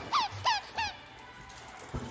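Squeaker in a plush dog toy squeezed three times in quick succession, each a short high squeak, all within the first second.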